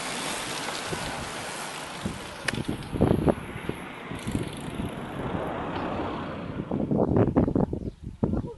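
Steady rushing wind on the microphone with road noise, recorded while moving alongside a bunch of racing cyclists.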